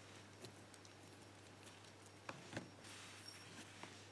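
Near silence with a few faint, small metallic clicks as a thin pinning tool works in the last pin chamber of an aluminium-bodied padlock and disturbs its pins. There is one click about half a second in and two close together a little past the middle.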